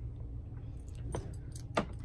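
Leather belts with metal buckles being handled and set down, with a few light metallic clinks and jingles over a steady low room hum.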